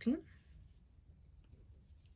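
A woman's voice trailing off at the very start, then near silence: quiet room tone with a faint low hum.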